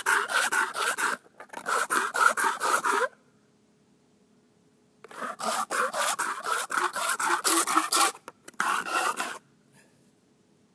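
Small metal can ground back and forth against a concrete driveway, a rapid rasping scrape of several strokes a second in four spells, with a pause of about two seconds in the middle. The rubbing is wearing the can's rim against the concrete to open it without a can opener.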